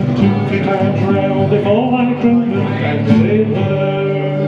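Strummed acoustic guitar playing the closing bars of a folk drinking song, chords ringing on steadily.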